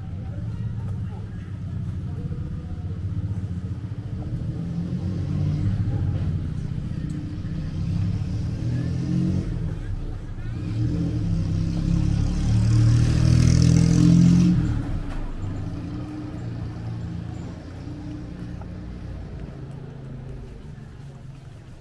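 Street traffic: motor vehicles running, with one passing close and loudest about two-thirds of the way through before dropping away quickly.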